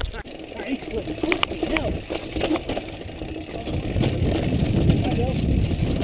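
Mountain bike rolling down a wet cobbled track: a rough rumble and rattle of tyres over the stones, growing louder in the second half.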